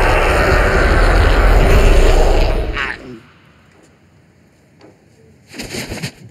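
A loud, steady rushing blast hits a person's face for about three seconds and then cuts off, leaving it fairly quiet.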